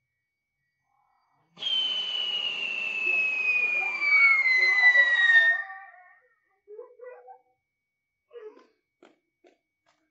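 Rooster-shaped novelty firecracker giving one long whistle that falls steadily in pitch over about four seconds, with a hiss underneath. It starts about a second and a half in, is loudest just before it stops near the middle, and a few faint short sounds follow.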